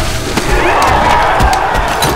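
Loud, chaotic fight soundtrack from a zombie attack: music under shouting, screaming voices and repeated low thuds, with no let-up.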